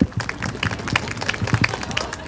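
Applause from a small audience: many scattered hand claps overlapping one another.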